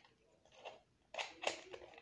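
Faint handling noises: a few soft taps and rubs of fingers on a plastic toy doll.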